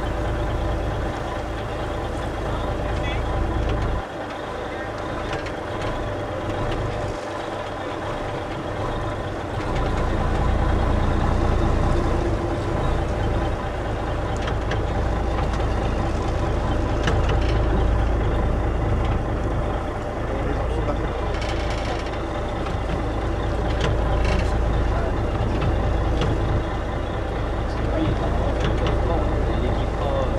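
Boat engine running at idle, a steady hum with a few held tones, under a low rumble of wind on the microphone that eases for several seconds a few seconds in.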